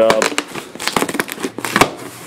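Cardboard box being pulled open by hand along its taped seam: a run of short rips and crinkles as the tape and cardboard tear apart.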